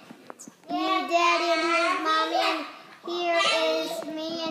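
A young child's voice sing-songing in long held notes, two drawn-out phrases with a short pause between them, without clear words.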